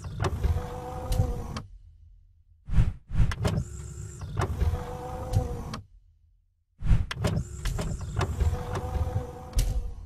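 Mechanical sound effect of a promo animation: a motorised whirring with sharp clicks and a steady hum. It plays three times, each about three seconds long, with short silent gaps between.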